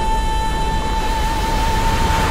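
Trailer score: a single high note held steadily over a deep, continuous rumbling drone.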